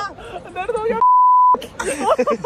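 A censor bleep: one steady high beep about half a second long, dubbed over the audio so that everything else drops out while it sounds, between bursts of men talking and laughing.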